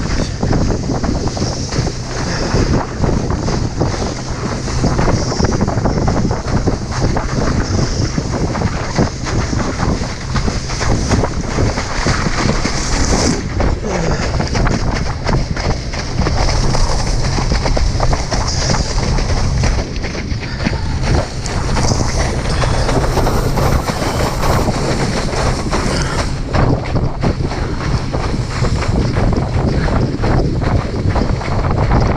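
Loud, steady wind buffeting the microphone of a water skier's action camera, mixed with rushing water and spray from skiing at speed through a boat's wake.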